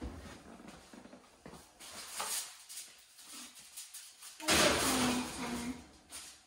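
A baking dish being slid into a home oven, with scraping and rattling of the oven rack and door, loudest in the last second and a half.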